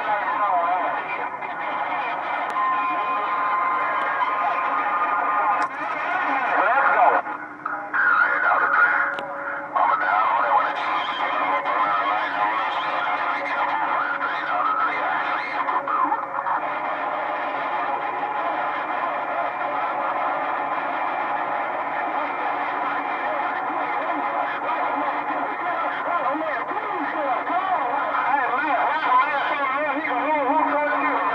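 A 10-metre/CB transceiver's speaker playing crowded channel traffic: garbled, overlapping distant voices mixed with wavering whistles, with a brief drop about seven seconds in. The set is switched from channel 11 to channel 6 partway through.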